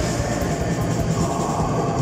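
Metal band playing live at full volume: a dense, unbroken wall of distorted electric guitars and drums.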